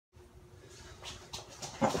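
Heavy breathing of two grapplers straining in a standing clinch: a few sharp breaths from about a second in, getting louder toward the end.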